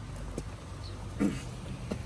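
Yamaha 125 motorcycle being pushed by hand out of mud, with a low steady rumble throughout, a few knocks, and a short grunt of effort a little over a second in.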